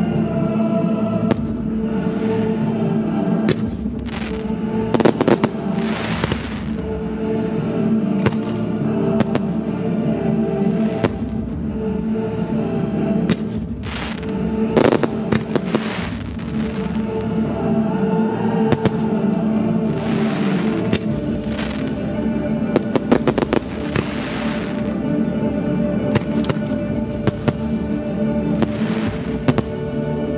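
Aerial firework shells bursting one after another, with many sharp bangs and several patches of crackle, each about a second long. Classical music plays steadily throughout.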